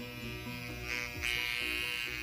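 Background music with an electric microneedling pen buzzing against the skin; its high motor whine comes back and grows louder about a second and a quarter in.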